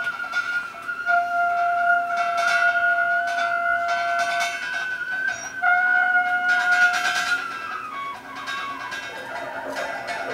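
Free-improvised jazz from a quartet of tenor saxophone, trumpet, bowed double bass and drums: long sustained high notes, for stretches two at once an octave apart, over scattered cymbal and percussion strikes. Near the end the held note steps down in pitch.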